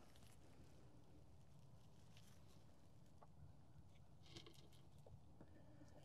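Near silence, with a faint low background hum and a few faint ticks.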